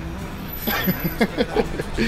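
A man laughing, a quick run of short falling laughs starting just over half a second in, over a low steady street rumble.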